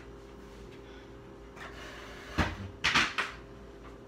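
Household objects being handled and set down: a sharp knock a little past halfway, then a short clatter just after, over a steady low hum.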